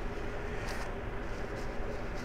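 Steady low background hum in a workshop, with a couple of faint light ticks.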